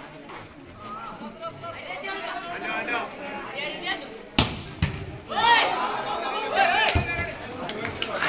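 Voices of players and onlookers chattering, then a sharp slap of a volleyball being spiked about halfway through, with a smaller knock just after. Loud shouting breaks out right after the spike.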